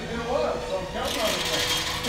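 Indistinct voice sounds, no clear words, over a steady faint hum.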